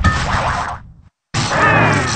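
Cartoon sound effects from a TV channel bumper: a noisy burst that fades away, a moment of total silence about a second in, then a sudden springy cartoon 'boing' with a sweeping pitch.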